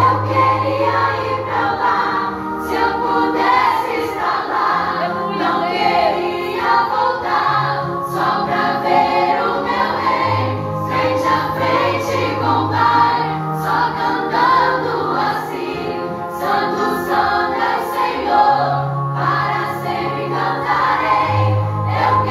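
A group of girls singing a Christian worship song together, over a keyboard playing long held bass notes that change every few seconds.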